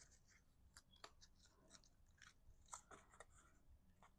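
Near silence, broken by faint, scattered rustles and light clicks of cardstock as hands slide the slice-card pieces together.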